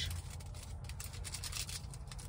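Irregular rustling and crinkling of fast-food paper packaging being handled, over a low steady hum.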